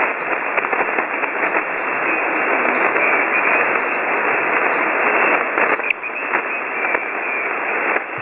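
Shortwave receiver audio in SSB mode: steady 40-meter band static, a rushing hiss with no treble, played through a web SDR receiver.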